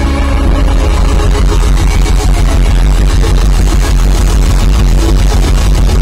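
Live rock band playing loudly: a dense, busy passage with fast, closely spaced drum strokes over the full band.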